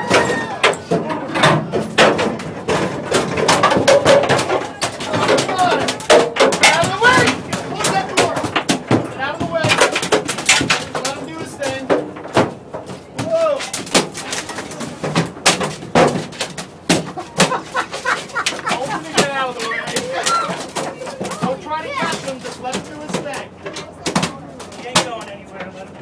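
Repeated sharp thumps and slaps of a large mahi-mahi (dolphinfish) thrashing on a boat deck, mixed with people's excited voices.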